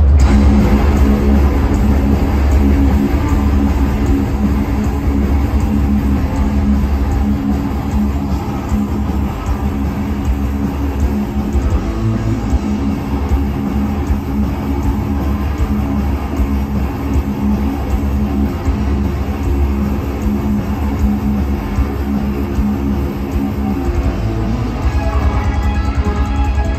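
Live thrash metal band playing loud: distorted electric guitars, bass and drums, with the song kicking in at the start.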